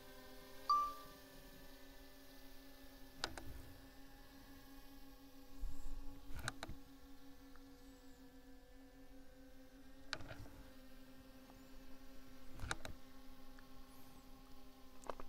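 Faint, steady hum of a DJI Mini 3 Pro's propellers hovering overhead, its pitch shifting briefly as the drone begins to fly a circle. A single short beep from the controller about a second in, and a few scattered clicks.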